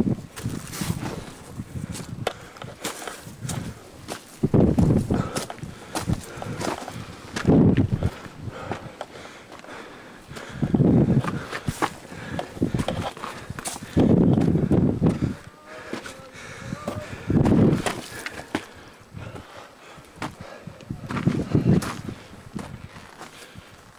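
Footsteps on loose stone and grit down a steep path, with knocks and scrapes from a hand-carried camcorder. A low rushing burst of about a second comes roughly every three seconds.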